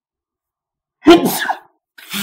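A man sneezes once, loudly and suddenly, about a second in.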